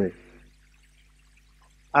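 A pause in speech: a man's words end at the start, then about a second and a half of faint room tone with a low steady hum, and his voice starts again at the very end.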